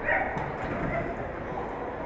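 A dog barking, with the loudest bark right at the start, over people's voices echoing in a large hall.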